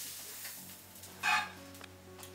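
A buttered pav sizzling on a hot tawa, the sizzle fading over the first half second, with soft steady background music coming in. A short, sharp pitched squeak sounds a little over a second in.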